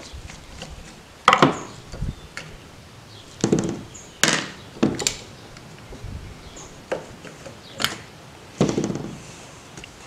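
Small metal carburetor parts and a screwdriver clicking and knocking against the carburetor and a plywood work board during disassembly: about eight short, separate knocks spread over ten seconds.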